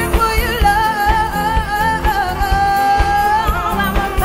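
Live band music with a woman singing lead: she holds one long note with vibrato through the middle, over a steady drum beat with keyboard and electric guitar.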